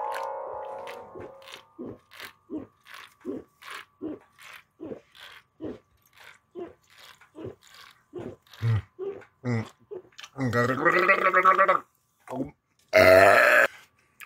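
A man gulping a can of fizzy drink down without a pause, swallowing about two to three times a second. He then gives a long burp about ten seconds in, with another short vocal sound near the end.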